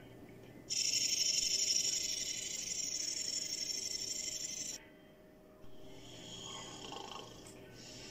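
Rattlesnake rattling its tail: a steady, dry buzz that starts just under a second in, cuts off sharply at about five seconds, then resumes more quietly.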